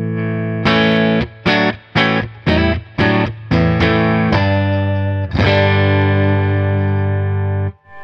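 Electric guitar chords played on a Telecaster-style guitar's neck humbucker, a Seymour Duncan '59, through a Fender Hot Rod Deluxe with a little overdrive, giving a nice, big, fat tone. A run of short struck chords is followed by one chord left ringing for about two seconds, then cut off near the end.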